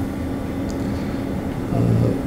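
A steady low background hum in a pause between speech, with a man's voice starting just at the end.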